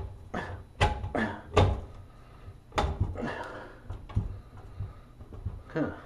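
Recessed shower light fixture being shoved up into its ceiling opening: a series of irregular knocks and thumps as the fixture, held by wire spring clips, is pushed and worked into place.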